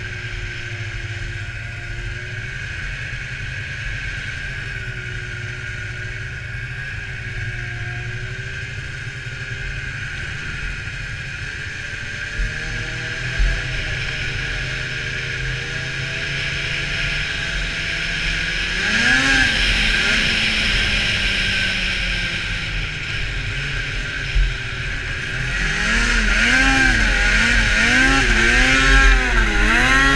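Polaris SKS 700 snowmobile's two-stroke twin engine running steadily at low speed. About two-thirds of the way in, it revs up and back down once. Near the end, it revs up and down repeatedly and grows louder as the sled is ridden hard, with a few brief thumps from bumps along the way.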